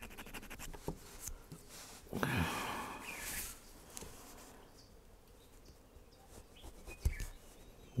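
Round needle file rasping in short strokes along the grooves of a thin translucent lure fin, with one longer, louder stroke about two seconds in and fainter scratching after it.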